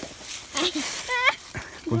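A brief rustle, then a short, high-pitched call that dips and then rises sharply in pitch.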